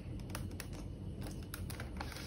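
A series of faint, irregular light clicks and taps from a pencil and hand on a drafting board with a plastic parallel-motion rule, as a line is finished and the pencil is lifted away.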